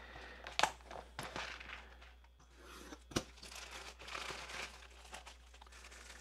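Plastic mailer bag and bubble wrap crinkling and rustling as a small packet is pulled out and handled. There are a couple of sharp clicks, one about half a second in and a louder one about three seconds in.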